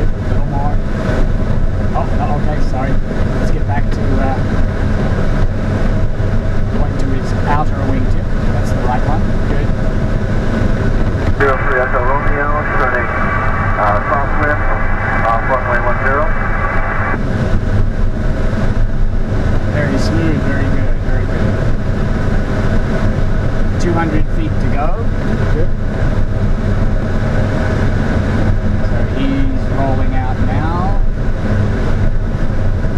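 Steady drone inside an ASK 21 glider's cockpit on aerotow: airflow rushing over the canopy, with the tow plane's engine running ahead. For about five seconds in the middle, a higher-pitched tone sits on top of it.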